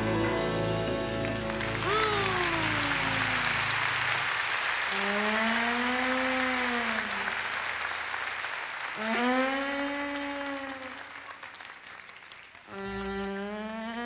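A western-swing band with fiddle ends the tune on a held chord, with a falling slide about two seconds in, and the audience applauds. Then come three long moos a few seconds apart, each rising and then falling in pitch.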